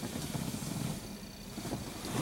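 Low, uneven rumble of a car running at low speed, with road noise.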